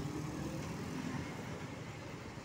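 A car driving past close by on an asphalt road, its engine and tyre noise slowly fading as it moves away, over general road-traffic noise.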